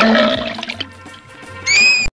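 Animated-cartoon soundtrack effects: a loud noisy rushing burst at the start, then near the end a shrill whistle-like tone that rises and then bends downward.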